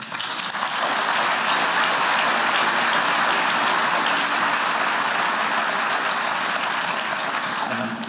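A large audience applauding: dense, even clapping that starts at once, holds steady and eases slightly before stopping near the end.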